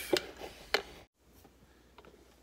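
Two sharp plastic clicks about half a second apart, as a plastic chopstick is poked against the drip-stop valve flap of a small drip coffee maker. The sound then drops out abruptly to brief silence.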